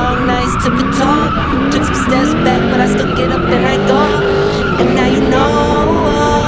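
A drift car's engine revving up and down, its pitch rising and falling, while the rear tyres spin and squeal through a smoky drift.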